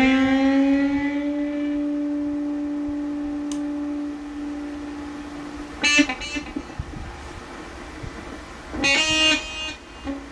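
Electric guitar lead: a single note bent up and held, ringing for about four seconds as it fades, then two short quick phrases about six and nine seconds in.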